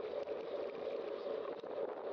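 Wind and road noise on a moving bicycle's camera microphone: a steady, muffled rush with a few faint clicks.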